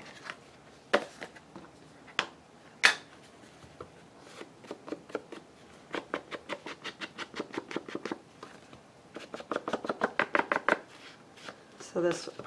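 A few sharp knocks as things are put down on the work surface, then an ink blending tool dabbed quickly on an ink pad and against the edge of a paper card, about five or six dabs a second in two runs.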